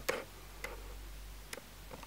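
A few faint short clicks from the lips: a soft lip smack just after the start, then a fainter one and two tiny ticks near the end.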